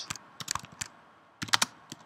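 Typing on a computer keyboard: a handful of scattered keystrokes with a short pause in the middle.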